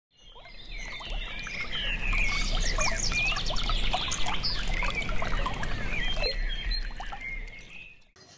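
Several birds singing and chirping over the sound of shallow river water. The whole sound fades in over the first two seconds and fades out near the end.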